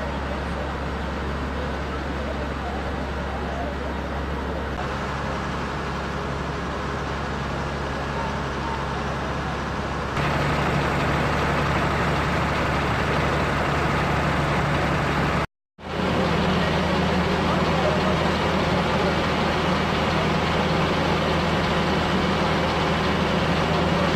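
Fire engines running steadily with a low engine hum, growing louder about ten seconds in and breaking off briefly near the middle.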